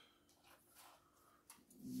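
Near silence: quiet kitchen room tone, with one faint click about one and a half seconds in.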